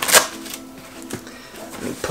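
A MacBook being pushed into a backpack's padded laptop sleeve: a short scrape just after the start and a faint click about a second later, over soft background music.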